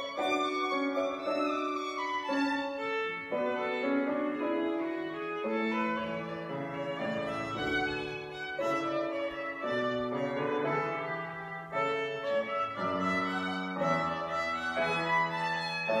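Violin playing a slow melody of sustained, bowed notes, with grand piano accompaniment underneath.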